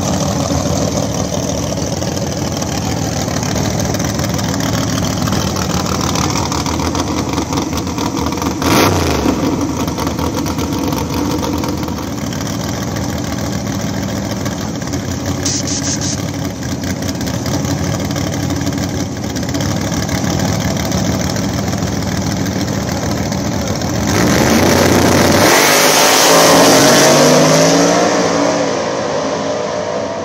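Nitrous drag-race car engines idle at the starting line, with a brief sharp burst about nine seconds in and a short hiss of a nitrous purge about halfway. Near the end both cars launch at full throttle, loudest of all, their engine pitch climbing as they pull away down the track.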